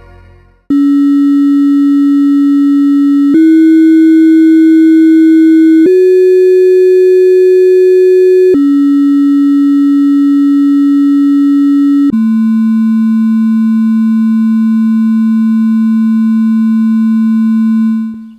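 A loud series of five steady electronic sine-like tones. Each is held for two to three seconds: the pitch steps up twice, drops back to the first note, then a lower final tone is held about six seconds before it cuts off.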